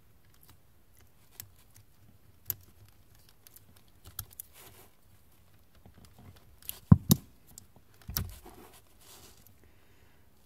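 Small plastic clicks and scrapes as a small flat screwdriver pries the plastic assembly lock out of a car's wiring connector. The loudest are a sharp double click a little before seven seconds and another click about a second later.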